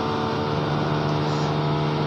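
A steady machine hum holding several fixed tones, unchanging throughout, heard in a gap between words.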